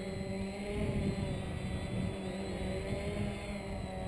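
UP Air One quadcopter's electric motors and propellers running with a steady hum.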